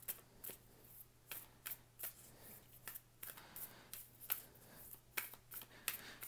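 A deck of tarot cards being shuffled and handled: a faint, irregular string of soft card flicks and taps. A faint steady low hum runs underneath.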